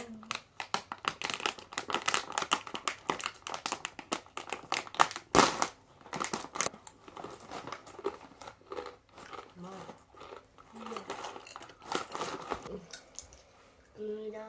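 A crinkly plastic snack bag being handled and pulled open, with dense crackling for the first several seconds and one loud tearing rip about five seconds in. The crinkling then goes on more sparsely.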